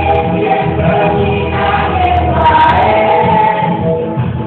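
A group of voices singing together, holding long notes in a slow melody.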